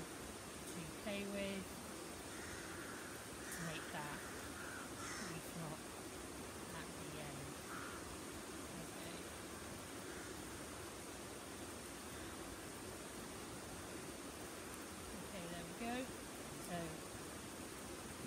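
Faint steady outdoor background with a few distant bird calls, crow-like caws, in the first seconds. There are brief low murmurs of a voice near the start and near the end.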